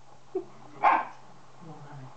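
A collie barking once, a single short sharp bark a little under a second in, during play.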